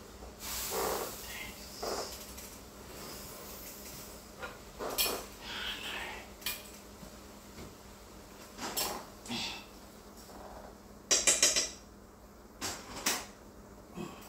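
Metal cookware and utensils clattering in a series of scattered knocks and clinks, with the loudest burst of ringing clanks about eleven seconds in.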